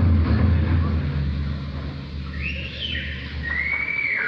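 Live rock band in a quiet instrumental passage: a low sustained bass drone fades out. From about two seconds in, high whistle-like electronic tones slide up and down.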